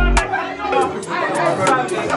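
Several men talking and calling out over party music. The music's bass cuts out about a quarter second in, leaving only its regular high ticks under the voices.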